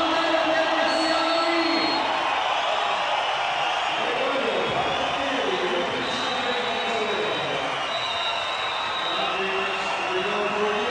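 A commentator talking over the steady noise of a crowd of spectators at a swimming race.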